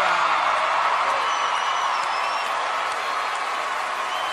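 Large theatre audience applauding and cheering, with a drawn-out whistle from the crowd about a second in.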